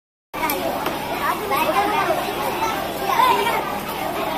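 Several people talking at once, children's voices among them, with two light knocks about half a second and one second in.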